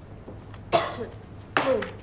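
A person coughs twice, two short coughs a little under a second apart, each trailing off with a falling voiced tail.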